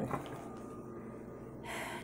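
Quiet room tone, then a quick breath drawn in near the end.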